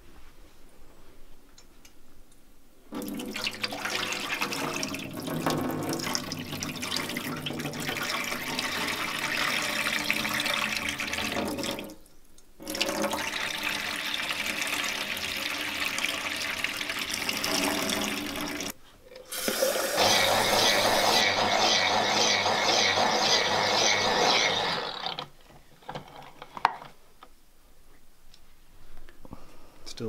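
Water running and pouring into a stainless-steel kitchen sink while seeds are rinsed in a blender jar, with the chaff and soapy saponin water poured off. The water comes in three stretches, about nine, six and six seconds long; the last is the loudest.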